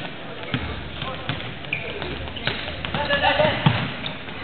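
A basketball bouncing on a hardwood gym floor in irregular knocks, mixed with players' footfalls, in a reverberant gym. Indistinct voices from players and spectators rise around three seconds in.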